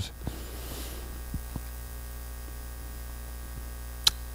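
Steady electrical mains hum from the sound system, with a few faint clicks in the first two seconds.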